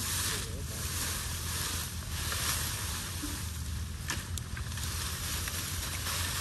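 Dry branches and leaves rustling, swelling and easing as a brush pile is pulled apart by hand, with a couple of twig snaps about two-thirds of the way in. Under it runs a steady low wind rumble on the microphone.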